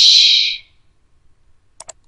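A short hiss that fades out within the first half second, then a quick double click of a computer mouse near the end, clicking the browser's reload button.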